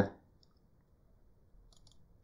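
A few faint computer mouse clicks: one about half a second in and a small cluster near the end.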